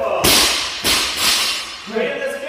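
A loaded barbell with bumper plates is dropped onto the gym floor, landing with a loud crash and bouncing once about half a second later.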